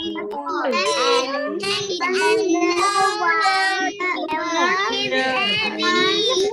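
Several children reading a sentence aloud in chorus, their voices overlapping and out of step, heard through a video call.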